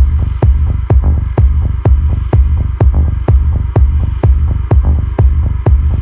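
Techno track: a four-on-the-floor kick drum at about two beats a second over a deep, steady bass line, with the highs cut so it sounds muffled.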